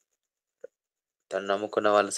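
A pause with almost no sound, then a man's voice resumes preaching at a microphone just over a second in.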